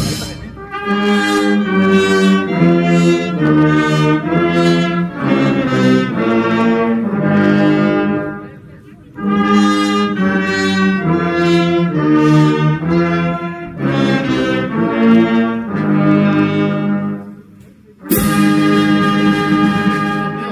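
Brass band playing a tune, with trumpets and trombones carrying the melody in phrases, broken by two short pauses near the middle and near the end.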